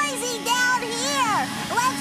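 Upright vacuum cleaner running with a steady hum, with voices talking loudly over it.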